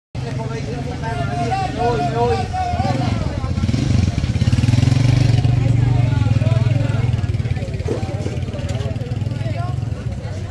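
Voices of a market crowd talking and calling out, over a motorcycle engine running close by. The engine is loudest around the middle and eases off a little toward the end.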